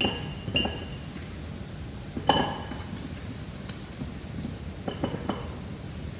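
Small new potatoes dropped one at a time into a glass bowl, each landing with a short ringing clink against the glass, about five times.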